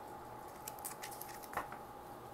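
A few faint, crisp clicks and scrapes of a hand with long fingernails on tarot cards lying on a cloth, bunched about a second in, as the hand lifts away. A faint steady hum runs underneath.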